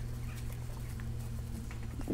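A man drinking from a glass bottle of ginger beer, with faint soft gulps and ticks over a steady low hum.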